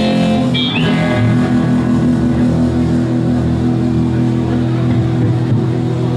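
Electric guitar and bass guitar of a live rock band playing the opening of a song, sustained notes held steadily.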